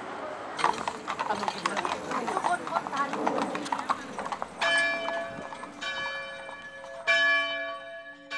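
Horse hooves clip-clopping on a paved street, then, a little past halfway, a church bell starts ringing: three strikes a little over a second apart, each one ringing on into the next.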